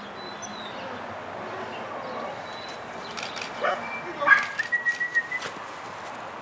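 A young puppy yipping and whining, starting about halfway through: a few sharp yips and two held high whines of about a second each.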